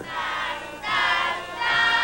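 A choir singing a national anthem in a few long held notes, the notes changing twice.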